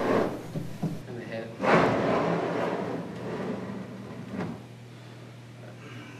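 Large acrylic wet-dry trickle filter being pushed and scraped into the opening of a wooden aquarium stand in a tight squeeze. A rubbing slide starts about two seconds in and fades, and a single short knock follows a couple of seconds later.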